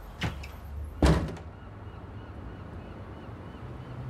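A door shutting with a single solid thud about a second in, just after a lighter knock. Quiet room tone with a faint low hum follows.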